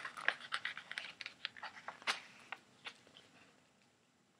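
Paper rustling and crackling as a picture-book page is turned: a string of irregular crinkles and ticks that grows fainter and dies away about three and a half seconds in.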